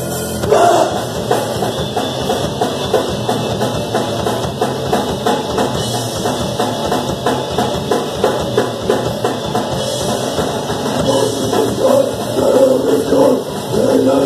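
Crust punk band playing live: a fast drum-kit beat with electric guitar and bass, kicking in with a loud hit about half a second in after a held chord.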